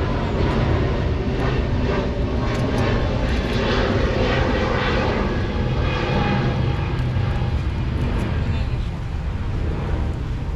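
A loud, steady engine drone with a low rumble, easing slightly near the end.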